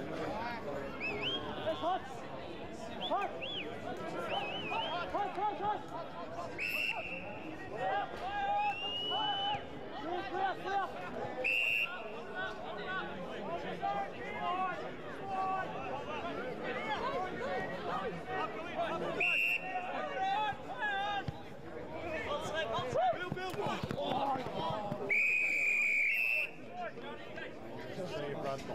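Spectators chatting close by throughout, broken by several short blasts of an umpire's pea whistle, the longest, about a second, near the end.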